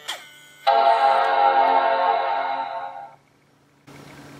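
MacBook Pro startup chime: one sustained chord lasting about two and a half seconds and fading out, the sign that the computer has powered on and begun to boot. A brief click comes just before it.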